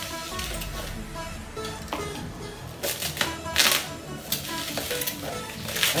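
Bubble wrap and plastic packaging crinkling and rustling in irregular bursts as a small gift is unwrapped by hand, with quiet music underneath.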